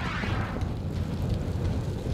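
A fiery whoosh at the start that fades within about half a second into a steady low rumble, a flame-burst sound effect laid under the title card.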